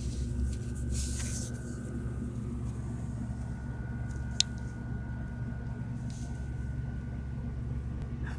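A steady low hum with a thin high whine above it, with rustling from the phone being handled about a second in and a single sharp click about four and a half seconds in.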